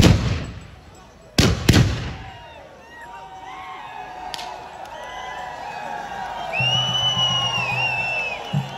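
Guns fired during a staged tribal battle: one loud shot at the start, two close together about a second and a half in, and a fainter one around four seconds. The shots are followed by a group of men yelling war cries, with a long shrill whoop near the end.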